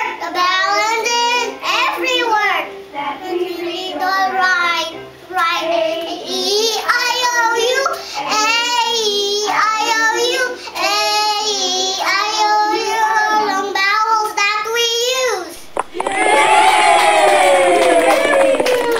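A young girl singing the vowel sounds 'ai, ee, ie' in short phrases, her pitch rising and falling. Near the end the singing stops and a louder, drawn-out sound falling in pitch takes over.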